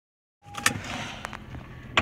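Car cabin noise: a steady low hum with a brief high tone as the sound comes in, and a few sharp clicks.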